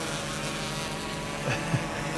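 DJI Inspire 2 quadcopter hovering close by, its propellers giving a steady multi-tone hum.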